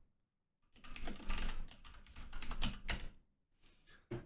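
Typing on a computer keyboard: a short, irregular run of keystrokes that starts under a second in and lasts about two seconds.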